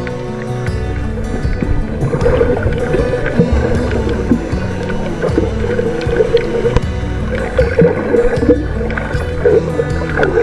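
Background music with sustained tones over a repeating low bass.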